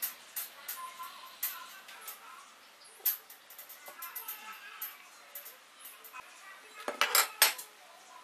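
Light clicks and taps of a metal speed square being shifted and aligned on a wooden board. About seven seconds in comes a quick run of several louder clacks as the square is set down on the wooden bench.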